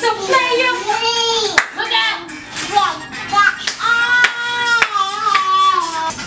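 Singing: one voice carrying a melody with held notes and glides, with a few sharp hand claps among it, about one and a half, four and five seconds in.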